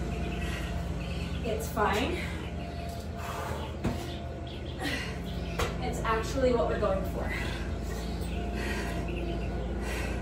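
Indistinct voice-like sounds, once about two seconds in and again between six and seven seconds, over a steady low hum, with a single sharp knock just before four seconds.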